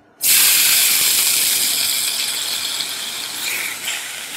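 Sizzling-sausages sound effect: a frying hiss that starts suddenly just after the start and slowly fades.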